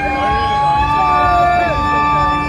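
A live band playing an instrumental passage, recorded on a phone from inside the crowd. Several high notes are held steady over a low note that comes in about half a second in, with crowd voices mixed in.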